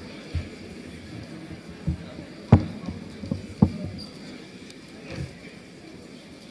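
A handful of separate knocks and thumps on a lectern, picked up close by its microphones as papers are arranged on it. The loudest is about two and a half seconds in, with another about a second later.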